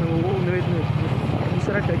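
Steady low engine rumble of a moving vehicle, with people's voices over it.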